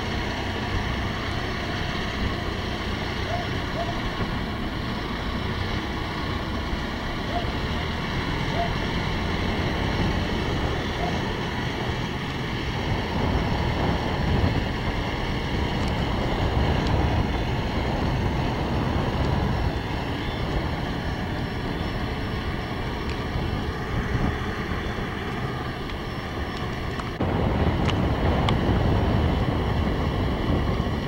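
Diesel engines of heavy construction machinery (a telehandler and mobile cranes) running steadily, with wind buffeting the microphone. The sound gets a little louder near the end.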